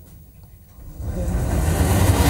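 Quiet for about the first second, then a rising whoosh with a deep rumble underneath that swells steadily louder: a broadcast transition sound effect opening a TV news channel's graphics sting.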